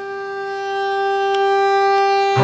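Violin holding one long bowed note that swells gradually louder.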